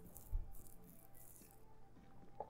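Faint shaking rattle: three or four soft, hissy swishes with a soft low thump about a third of a second in.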